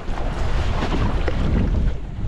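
Strong wind buffeting the microphone over the wash of rough sea against a boat's hull.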